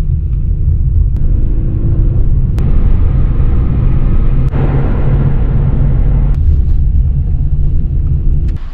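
Low, steady rumble of a car driving, heard from inside the cabin: engine and road noise. The sound changes abruptly a few times as one stretch of driving cuts to the next.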